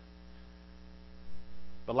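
Steady electrical mains hum: a low, even buzz with evenly spaced overtones, with a single spoken word at the very end.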